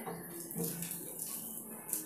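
Faint wet squishing of soaked poha (flattened rice) being worked by hand in water in a bowl, as it is washed.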